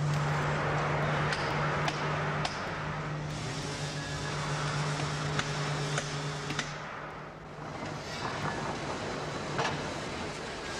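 Moulding-shop machinery running: a steady low hum under a rushing noise, with scattered metallic clicks and knocks. The hum fades out about two-thirds of the way through.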